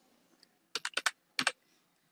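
Computer keyboard keystrokes typing a short word: a quick run of sharp key clicks in two brief groups around the middle.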